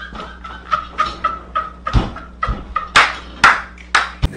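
A man laughing hard in short, high-pitched, staccato bursts, about three a second, with two louder, breathier bursts near the end.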